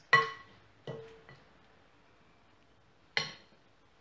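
A kitchen utensil knocking against a dish three times, each clink ringing briefly; the first is the loudest, the next follows under a second later and the last comes about three seconds in.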